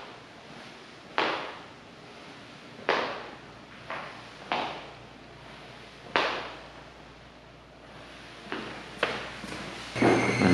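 Recorded sound effects playing in a small domed bath room: about seven short noisy bursts at irregular intervals, each starting suddenly and fading away over about half a second.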